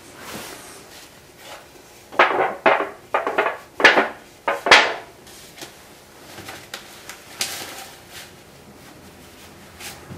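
A disposable aluminium foil pan being handled with gloved hands, giving a quick run of about six crinkling scrapes between two and five seconds in, with fainter rustles before and after.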